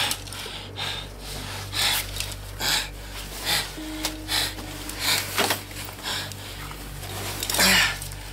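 A man breathing hard with exertion in short noisy bursts, about one a second, over a low steady hum.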